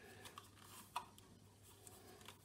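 Near silence with faint handling noise from insulated wire and a 3D-printed plastic coil spool, with a few small ticks and one slightly louder click about a second in.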